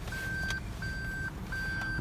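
2019 Toyota Prius's in-cabin reverse warning beeper, sounding because the car is in reverse: a run of even high beeps, about three in two seconds, over a low cabin rumble.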